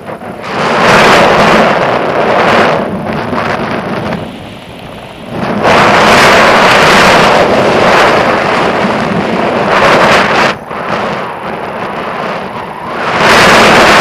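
Wind rushing over the microphone of a camera held out on a pole during a tandem paraglider flight, buffeting in loud surges with quieter dips between them.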